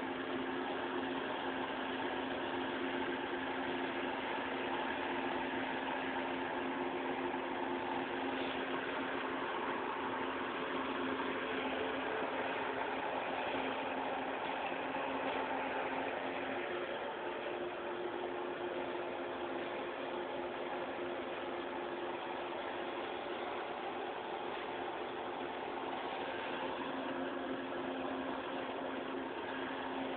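Steady mechanical hum with two low held tones under a constant hiss, unchanging throughout.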